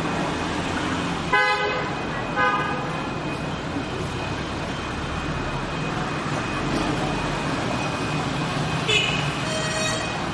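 Vehicle horns honking over steady street traffic noise. Two short honks come about a second apart in the first few seconds, and another comes near the end.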